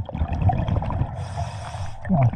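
Underwater breathing through a scuba regulator: a bubbling low rumble of exhaled air, then a hiss of air lasting under a second near the end.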